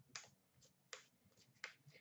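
Trading cards being flipped through by hand, giving three faint, short clicks about three-quarters of a second apart.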